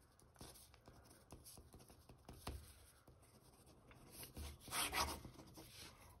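A Pentel Rolling Writer's plastic tip writing on paper: faint, short scratchy strokes of handwriting, then a longer, louder stroke about three-quarters of the way through.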